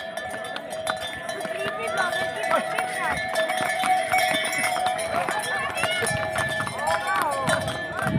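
Harness bells on trail ponies ringing steadily, with hooves clicking on a stone path and people's voices around.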